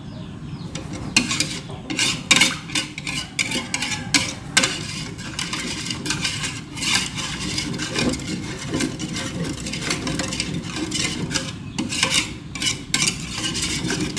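Wire balloon whisk stirring thin liquid batter in an aluminium pot, its wires scraping and clicking irregularly against the pot's sides and bottom from about a second in.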